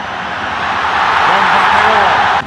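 Large stadium crowd cheering in reaction to a red card, the noise swelling louder through the two seconds.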